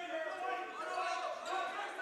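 Basketball gym ambience during play: faint, distant voices of players and bench calling out, echoing in the hall.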